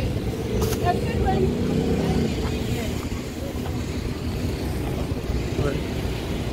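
Steady low rumble of road traffic, with one vehicle's engine hum standing out over the first half.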